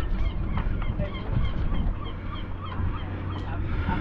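Birds calling over and over in short, quick calls, over a steady low rumble.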